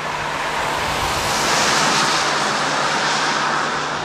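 A vehicle passing on the road: a rush of tyre and engine noise that swells to its loudest about halfway through, then fades, over a steady low hum.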